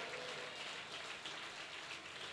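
Faint, steady applause from an audience, many hands clapping together.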